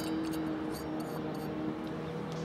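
A steady low hum of a few fixed tones over faint background noise, with a faint click at the start.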